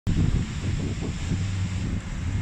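Wind buffeting a phone's microphone outdoors in snowfall: an uneven low rumble, with a faint steady low hum under it through the middle.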